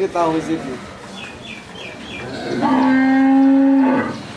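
A cow mooing once: a single long, steady call that begins about two and a half seconds in.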